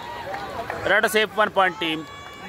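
A man's voice calling out loudly in short, quick syllables from about a second in, over crowd noise.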